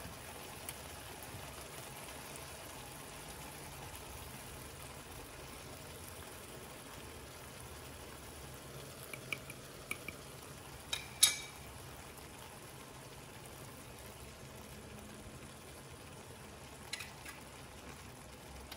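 Vegetables cooking in a frying pan, a steady low sizzle throughout. A few small clicks, with one sharper, louder click about eleven seconds in.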